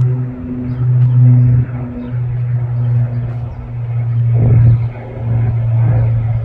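Small airplane's engine droning overhead: a steady low hum of constant pitch with overtones that swells and dips in level. There is a brief rumble about four and a half seconds in.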